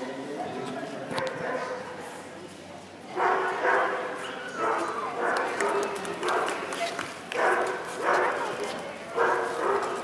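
A dog barking repeatedly, about ten sharp barks from about three seconds in, over a background of people talking.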